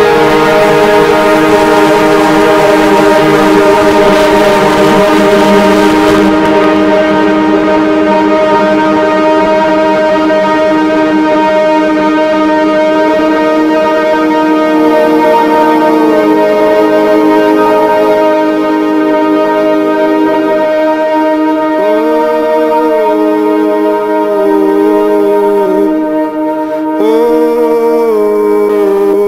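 Live electronic drone from a Novation Peak synthesizer with Soma Pipe and Soma Cosmos. A dense, loud chord of sustained tones sits under a high hiss that fades out about six seconds in. Later a middle tone bends up and down several times over the steady drone.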